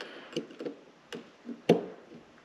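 Needle-nose plier tips clicking against the small metal SMA antenna nut of a handheld radio as it is worked loose: a few light ticks, then one sharper click near the end.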